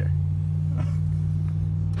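Dodge Ram pickup's engine heard from inside the cab, running at full throttle under load as it pulls a trailer up a hill. It holds a steady low hum with no change in pitch.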